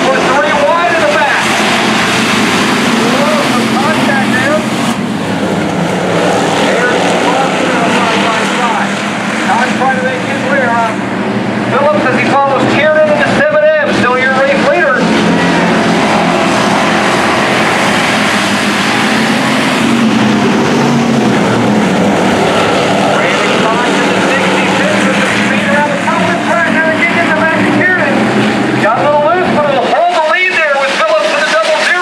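A field of hobby stock race cars with V8 engines running together around a dirt oval, heard as a continuous engine drone from the grandstand. Voices come and go over it.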